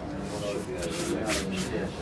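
Indistinct voices talking, with some rustling or rubbing in the second half.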